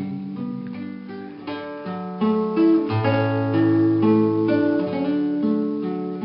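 Instrumental break of a slow ballad, with plucked and strummed acoustic guitar playing held chords and single notes.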